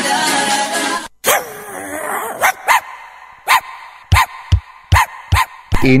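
The tail of a music track stops about a second in. Then a dog barks about nine times in short, sharp barks, some in quick pairs, used as a sound effect that opens a radio ad for dog grooming.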